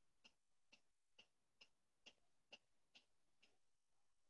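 Faint, even ticking, about two ticks a second, that stops near the end.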